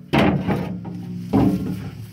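Two heavy metal knocks about a second and a quarter apart, each followed by a low, steady ringing: the steel of the loader's mounting brackets being knocked as they are handled.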